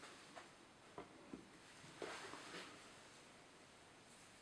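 Near silence, with a few faint clicks and a soft rustle as a mallard breast feather is wound around a hook shank with hackle pliers.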